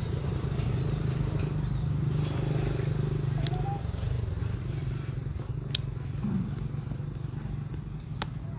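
A steady low engine hum, strongest in the first half and dying down about halfway through. A few sharp clicks cut through it.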